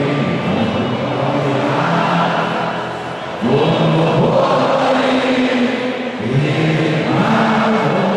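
Many voices singing a slow melody together in unison, in long held phrases of a few seconds each, with brief dips between phrases.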